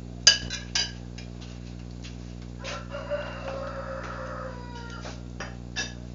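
A rooster crowing once, a long call of about two seconds in the middle, sinking slightly in pitch at its end. Near the start, a glass pan lid clinks sharply twice against a frying pan, louder than the crow, with two lighter clinks near the end.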